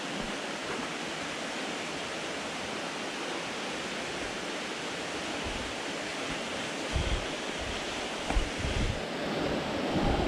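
Steady rushing of spring water flowing beneath the cave's breakdown rocks. A few dull low bumps come in near the end.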